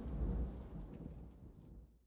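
A low rumble that swells just after the start and dies away, with faint pattering above it, fading out near the end.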